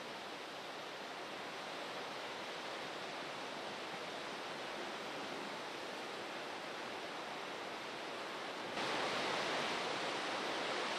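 Steady, even hiss with no distinct sounds in it, stepping up slightly about nine seconds in.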